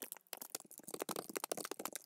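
Computer keyboard typing: a quick, uneven run of light key clicks.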